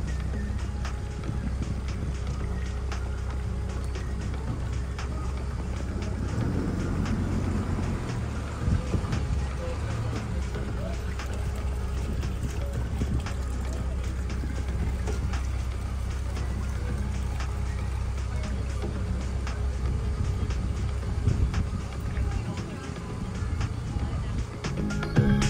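Resort launch boat's engine running at low idle as it manoeuvres alongside the dock, with a steady low hum whose note shifts between about six and nine seconds in.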